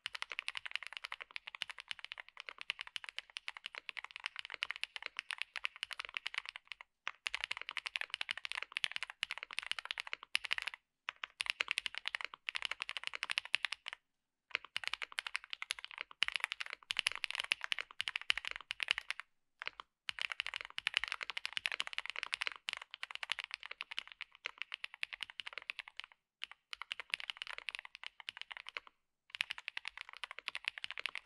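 Fast continuous typing on lubed and filmed Tecsee Blue Balloon mechanical switches in a Mr. Suit 80 keyboard with a PC plate, full foam and GMK keycaps: a dense stream of keystroke clacks. The stream breaks off briefly a few times.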